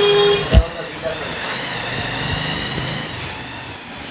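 A steady horn-like toot that cuts off about half a second in, then a single sharp low thump, over a steady background murmur.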